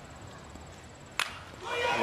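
A bat hitting a pitched baseball: one sharp crack a little over a second in, over low crowd noise that starts to swell just after.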